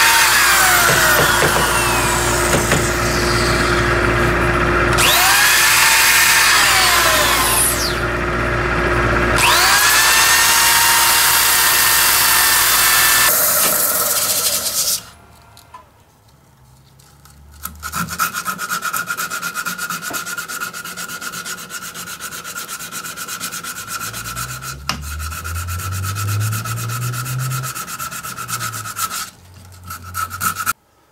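Power sanding of a carrot wood bowl with a cordless drill and foam-backed sanding disc; the drill's whine dips and recovers twice as the trigger is eased, then stops after about thirteen seconds. After a short lull, sandpaper is rubbed against the wood by hand in a steady rasping hiss.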